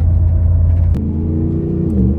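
In-cabin drone of a Y62 Nissan Patrol's V8 engine and road noise while driving. A deep hum gives way abruptly about a second in to a higher, steady engine tone that dips slightly in pitch near the end.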